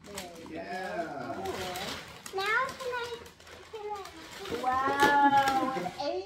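Excited, high-pitched voices of young children, with no clear words, ending in one long rising-and-falling cry about five seconds in.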